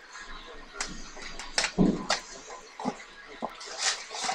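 Scattered short rustles and clicks of trading-card packs and a card box being handled and set down.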